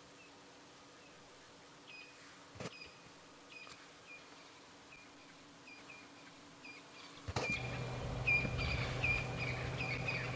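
Faint bird calls: short high chirps repeated about once or twice a second. About seven seconds in, the background comes up with a low steady hum under them.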